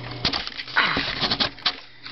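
A sharp knife blade hacking and tearing through a paperback book's cover and pages: a run of clicks and scrapes, with a louder ripping stretch about a second in.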